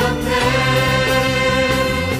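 A group of singers with microphones singing an upbeat praise song together over a live worship band.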